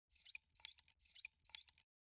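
Four short, high twittering chirps, about two a second, as the sound effect of an opening logo animation.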